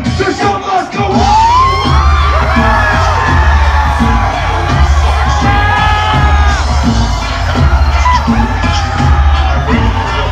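Live hip hop concert heard from within the crowd: a heavy bass-driven beat through a club PA with shouted vocals, and audience yells and whoops over it. The bass cuts out for about a second near the start, then the beat comes back in.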